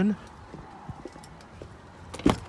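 Footsteps on asphalt, a few soft steps about half a second apart, as a person walks beside a parked pickup truck.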